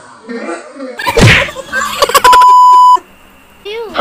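A person gags suddenly about a second in, with a marshmallow-stuffed mouth, followed by a bit of voice. Then comes a loud, steady, single-pitch beep lasting just under a second, a bleep added in editing. Sliding, warbling effect sounds start near the end.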